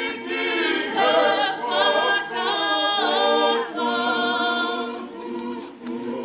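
Unaccompanied choir of many voices singing in harmony, in long held notes with short breaks between phrases.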